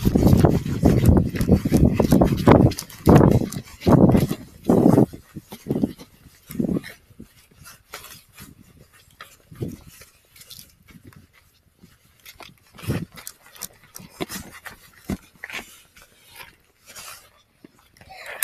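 Clothing rubbing and scraping over a handheld camera's microphone as it is carried against a jacket: loud, irregular puffs and rumbles for about the first five seconds, then sparser, quieter scratches and crackles.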